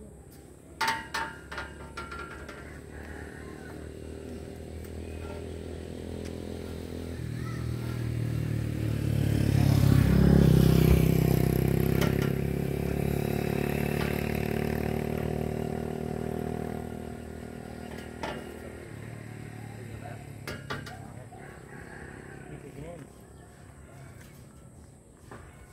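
A motor vehicle passing by. Its engine grows louder, peaks about ten seconds in, then fades away over the next several seconds. A few sharp metallic clanks come near the start and again near the end.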